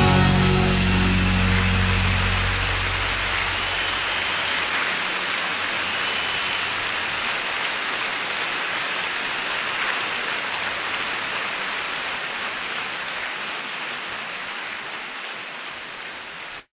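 The band's last chord dies away over the first few seconds. Then comes audience applause with a few faint whistles, fading out slowly to the end of a live recording.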